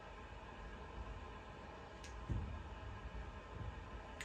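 Quiet room tone: a faint steady hum, with one soft low thump a little past halfway.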